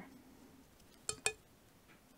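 Two quick, light clinks close together about a second in, with quiet room tone around them.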